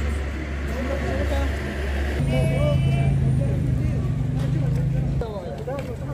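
A vehicle engine running close by, its hum growing louder and higher about two seconds in, holding for about three seconds, then dropping back, with people talking in the street over it.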